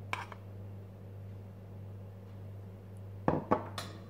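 Metal spoon clinking against a glass bowl while protein powder is spooned out: one short knock at the start, then three sharper clinks close together near the end.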